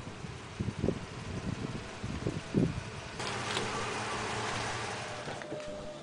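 A white SUV driving slowly onto a driveway, its engine running low and uneven for the first few seconds. This gives way to a broad, steady hiss for about two seconds in the middle.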